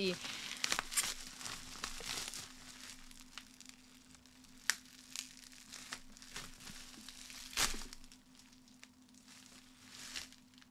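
Plastic bubble wrap crinkling and rustling as it is pulled off a bottle by hand: soft scattered crackles with a few sharper snaps, the clearest about halfway and about three quarters of the way through.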